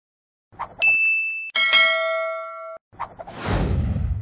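Sound effects of an animated subscribe-and-notification-bell end screen: a click, then a short high ding about a second in, then a bell-like chime ringing for about a second, followed by a whoosh near the end.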